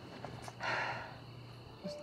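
A short breathy exhale from a person about half a second in, over a faint steady low hum.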